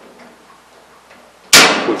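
A hand-operated 30-degree V-notcher snapping shut through the edge of galvanized sheet metal: one sharp metallic snip about a second and a half in, with a brief ring after it.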